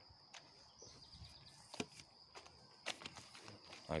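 Faint footsteps of a person walking on a paved path: a few soft, irregular clicks.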